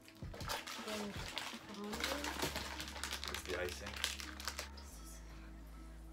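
Plastic packaging crinkling and crackling in quick, irregular bursts as the wrapped pieces of a gingerbread house kit are handled and unwrapped.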